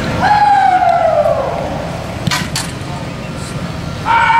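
A long drawn-out shout sliding steadily down in pitch for just over a second. A little over two seconds in come two sharp smacks about a third of a second apart.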